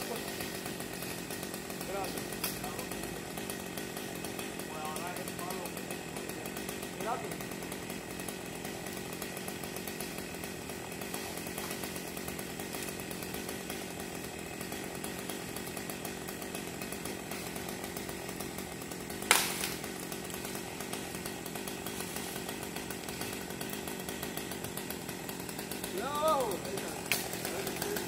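A chainsaw running steadily at a constant pitch, with one sharp knock about two-thirds of the way through and brief calls from the crew near the end.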